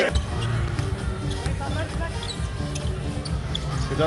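A basketball being dribbled on a hardwood court, with arena crowd noise and music playing underneath.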